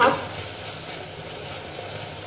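Rice and browned vermicelli frying in oil in a pot, sizzling steadily as they toast before the water goes in.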